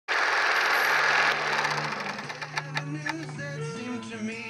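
A mechanical whirring noise with a steady low hum for about a second, then a run of sharp clicks, then a guitar starting to play near the end.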